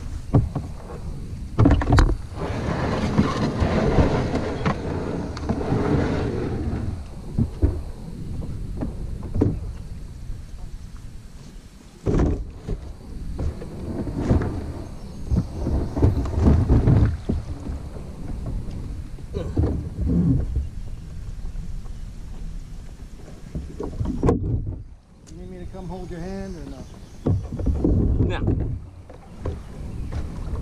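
Kayak paddling: paddle blades dipping and splashing and water washing along the hull, in irregular bursts every second or two.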